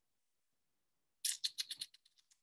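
A quick run of about seven clicks at a computer, starting a little past a second in, with fainter clicks trailing off at the end.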